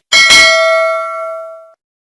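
Notification-bell sound effect from a subscribe animation: one bell ding struck just after the start, its tones ringing on and fading out after about a second and a half.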